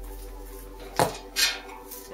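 A steel nut clinking against the steel chassis rail as it is picked up by hand: a sharp click about a second in and a softer one just after.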